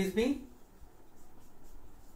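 A short spoken phrase, then faint writing sounds, a low rubbing noise that grows slightly louder toward the end.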